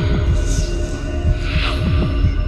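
Eerie horror-film score: low throbbing pulses, about three a second, over a held drone, with a few falling swoops.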